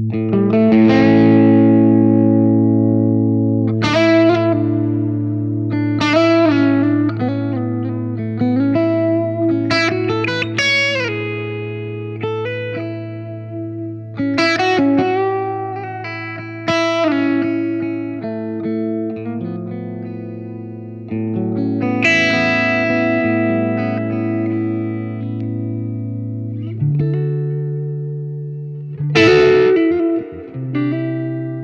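Electric guitar played through a Marshall Bluesbreaker vintage reissue overdrive pedal into an amp, set for a mild, edge-of-breakup tone. Chords and single-note phrases with string bends ring over a sustained low note.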